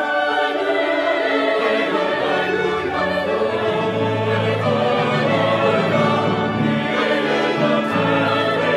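Mixed choir singing a hymn in harmony with instrumental accompaniment. A low bass line comes in about two and a half seconds in.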